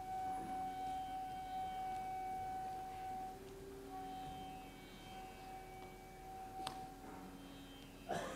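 Quiet background music of long held, gently changing notes, with a single short click about two-thirds of the way through.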